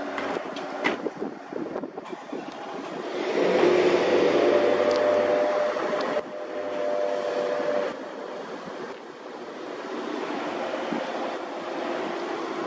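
Street traffic: a vehicle drives past, swelling in loudness about three seconds in with a steady engine hum, then fading away over the next few seconds, leaving a steady street background.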